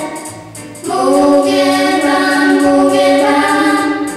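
Children singing a song together in long held notes. The singing dips briefly just after the start, then comes back loud about a second in.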